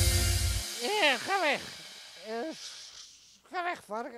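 A music track cuts off under a second in. Then a voice comes in short, drawn-out, sing-song phrases that swoop up and down in pitch.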